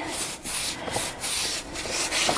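A flat paintbrush brushing clear gesso onto thick brown craft paper, a dry rubbing sound in repeated back-and-forth strokes as the page is primed.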